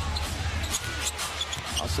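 Basketball dribbled on a hardwood court, with the steady hum of the arena behind it.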